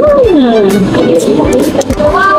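A woman's drawn-out "mmm" of enjoyment while eating, its pitch rising briefly and then sliding down, over background music.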